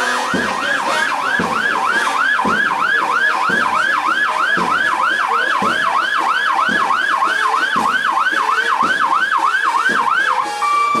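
Fire engine siren sounding a fast yelp: a wailing tone sweeping up and down about three and a half times a second. A low thump comes about once a second beneath it.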